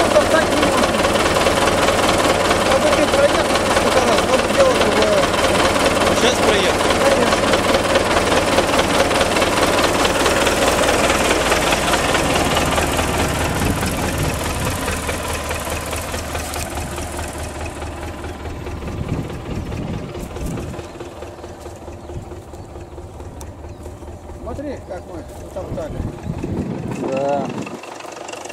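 A wheeled farm tractor's diesel engine running close by, loud at first, then growing steadily fainter from about halfway through.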